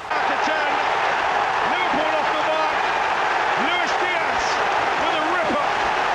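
Football stadium crowd cheering a goal: a loud, steady roar of many voices with individual shouts rising above it, cutting in suddenly at the start.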